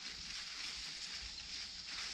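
Faint, steady high-pitched insect chorus from a late-summer cornfield, an even buzz with no breaks.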